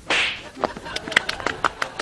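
A sharp swish lasting under half a second as an arm swings fast in a mock knife-attack drill, followed by a scatter of short clicks and taps.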